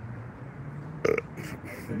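A man's single short burp about a second in, over a steady low background hum.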